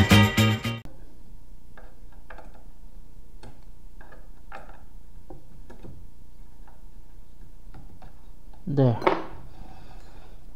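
Upbeat background music cuts off about a second in. Then a few faint, irregular metallic clicks and taps of steel tweezers and thin wire against an aluminium extrusion as the wire is threaded through a drilled hole.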